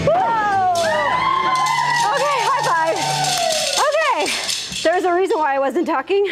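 Women whooping with long, falling "woo" calls over workout music with a steady bass note, which stops about three seconds in; short wordless voice sounds follow.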